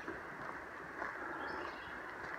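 Quiet woodland background: a few faint, short bird chirps over a low, even hiss.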